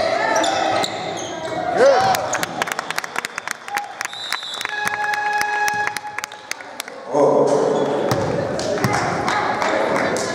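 Basketball play on a hardwood gym floor: a ball bouncing and sneakers squeaking, with players' voices echoing in the hall. A steady tone sounds for about a second and a half midway, and loud voices rise near the end.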